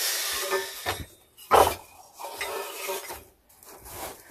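Old objects being handled and shifted about: scraping and clattering, with one sharp knock about a second and a half in.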